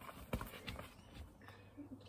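A football being tapped along with the feet on grass: several soft, irregular knocks of foot on ball, mixed with footsteps.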